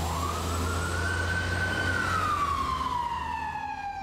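A siren wailing, its pitch rising slowly and then falling back once, over a steady low rumble of street traffic.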